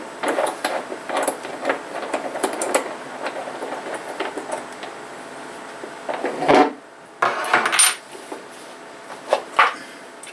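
Hard plastic clicking and rattling as a yellow plastic road barricade lamp is handled, its key-locked bolt being worked. Small clicks run through the first part, followed by a few louder knocks and clatters in the second half.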